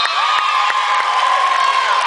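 Volleyball spectators and players cheering as a point is won, one high-pitched voice held in a long scream over the crowd.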